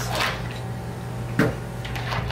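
PVC pipes being handled and set down on a tile floor by a wooden board, with a short knock at the start and a sharper knock about a second and a half in, over a steady low hum.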